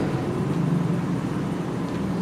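Steady background hum and hiss of a hall picked up through the podium microphone, with a low steady drone and no distinct events.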